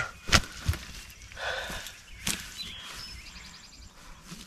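Footsteps in dry grass and a few sharp knocks from a hunter handling a freshly shot wild turkey and his shotgun, the loudest knock just after the start. A small bird trills faintly in the background near the end.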